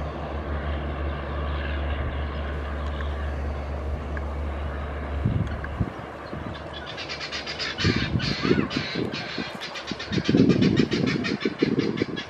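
Passenger train running on a curve behind a diesel locomotive, heard at a distance: a low, steady drone that cuts out suddenly about halfway, then a rapid, even clatter that continues to the end, mixed with irregular low thumps.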